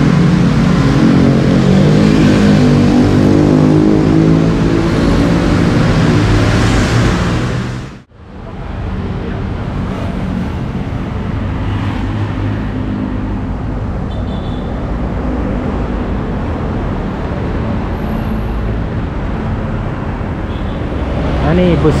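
Busy city road traffic, cars and motorbikes passing, heard from a roadside bus shelter. The first part is louder with shifting pitched sound over the traffic; about eight seconds in the sound drops briefly to near silence, then steady traffic noise runs on at a lower level.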